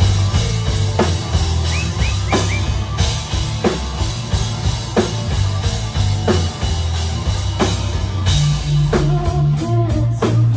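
Live rock band playing an instrumental passage on electric bass, electric guitar and drum kit, with a heavy, sustained bass line under a slow, steady drum beat. Near the end a higher melodic line comes in.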